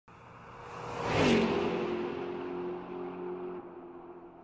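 Channel logo intro sound effect: a whoosh swells to a loud peak about a second in, then drops in pitch into a steady low hum that fades out.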